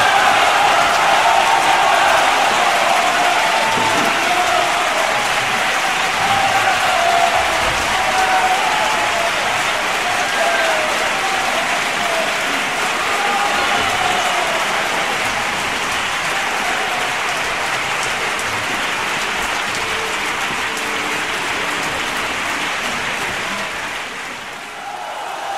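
Large audience applauding steadily, with some cheering voices in it, slowly fading away toward the end.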